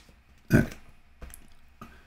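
A short spoken 'okay' about half a second in, followed by a few faint keystrokes on a computer keyboard.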